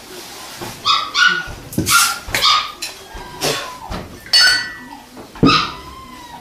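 A dog giving a string of short yips and barks, several to the second at times.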